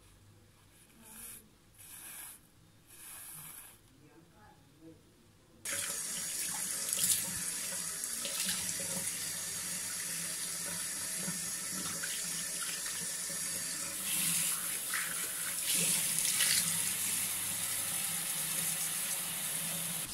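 A few soft rustles, then water from a bathroom sink tap starts suddenly about six seconds in and runs steadily, with a few louder splashes.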